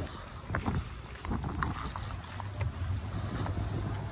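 Scattered footsteps and light taps on asphalt as a person and a leashed dog walk, over a low steady hum that comes in about a second in.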